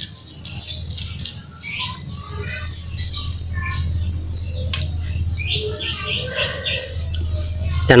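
Small birds chirping in quick, short calls over a low steady hum.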